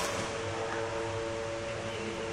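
A single sharp racket-on-shuttlecock hit right at the start, with a brief echo, over a steady background hum made of several held tones.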